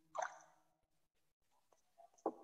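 Near silence, broken by one brief, faint wet mouth click just after the start.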